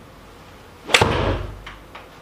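Iron club striking a golf ball off a turf hitting mat: one sharp crack about a second in, followed by a short low thud that dies away.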